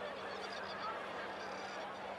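Outdoor background ambience: a steady murmur with a low constant hum and a few faint, high, bird-like calls.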